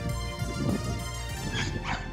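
Background music, with a pit bull giving short yips and whines about half a second in and again near the end.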